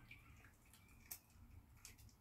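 Near silence, with two faint brief clicks, one about a second in and one near the end.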